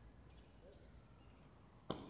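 One sharp crack of a jai alai pelota striking hard near the end, over faint open-air background.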